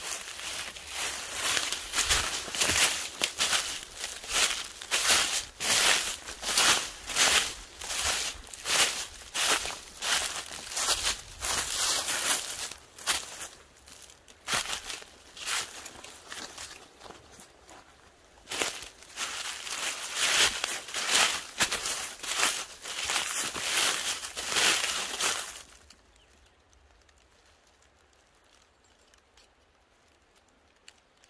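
Footsteps crunching through dry leaf litter at a walking pace, about two steps a second. The steps go softer for a few seconds midway, pick up again, then stop near the end.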